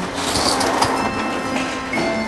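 Corrugated metal roller shutter door rolling up with a continuous metallic rattle.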